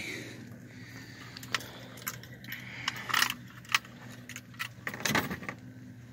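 Scattered metallic clicks and rattles from a handheld lip-gripper fish scale as the catfish is handled, loudest about five seconds in, over a steady low hum.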